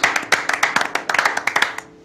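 A small group of people clapping their hands in quick, uneven applause that dies away near the end.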